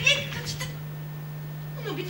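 Short vocal sounds from a person: a brief exclamation at the start and a falling, meow-like cry near the end, over a steady low electrical hum.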